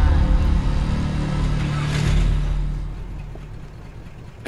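Car engine sound effect in a cartoon: a low engine rumble that fades away over the last two seconds as the car pulls up.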